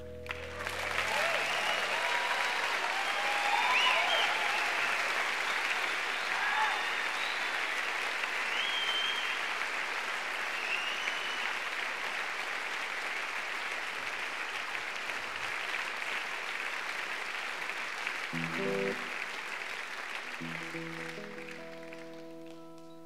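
Concert audience applauding after a song, with scattered cheers in the first half; the applause slowly fades. A few guitar notes sound near the end as the band gets ready for the next song.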